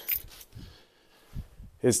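A pause in a man's speech: quiet room tone with a faint low sound about one and a half seconds in, then his voice resumes near the end.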